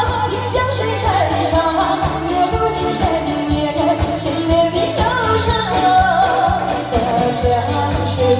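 A woman singing live into a handheld microphone over a pop backing track with a steady beat, her voice a lively melody that rises and falls.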